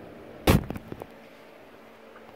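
A single sharp knock about half a second in, followed by a few fainter clicks, then quiet room tone.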